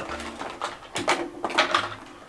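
A small plastic-and-cardboard power bank package being handled and opened by hand: a few scattered clicks and rattles.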